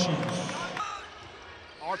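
Basketball game sound on an indoor hardwood court: a ball being dribbled under the arena's steady background noise, with a TV commentator's voice trailing off in the first second.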